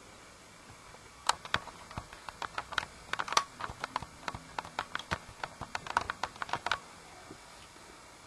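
Light, irregular clicks and taps, several a second, of small toy engines being handled and set down on a toy shed base. They start about a second in and stop near the end.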